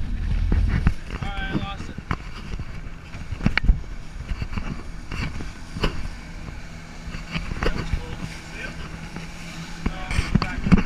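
Open boat running at speed: a steady low rumble of wind on the microphone, rushing water and the outboard motors, broken by several sharp knocks as the hull hits the chop or the camera is bumped.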